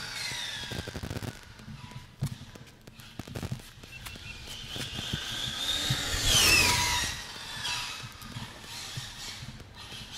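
ARRMA Infraction RC truck's electric motor and drivetrain whining as it runs: a falling whine in the first second, then a rising whine that peaks about six and a half seconds in and drops away sharply, with scattered light clicks.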